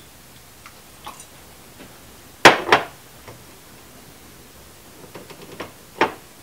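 Two sharp knocks a quarter-second apart, a small glass bitters bottle being set down on a bar counter, with a few faint clinks around them.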